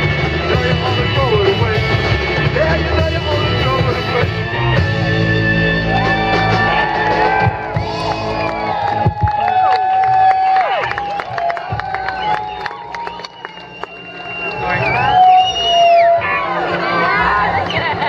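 A live garage-rock band with bass, guitar, drums and organ plays a loud song that ends about eight seconds in. The crowd then cheers, shouts and whoops.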